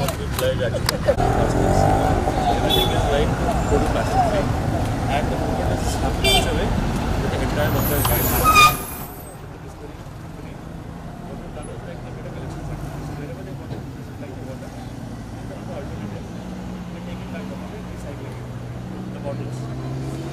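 Busy street background of crowd chatter and road traffic. It is loud at first, then cuts abruptly to a quieter background about nine seconds in, with voices again near the end.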